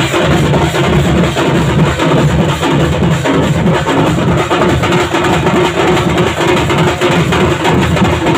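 Street drum band playing a loud, dense drum rhythm: several players beating handheld drums with sticks, together with a rack of drums mounted on a cart.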